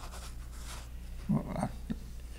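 Quiet studio room tone with a steady low hum. About a second and a half in, a man's voice gives a brief, quiet murmur, followed by a small click near the end.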